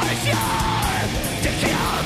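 Live heavy rock band playing loud, with a singer yelling a long held note over the band.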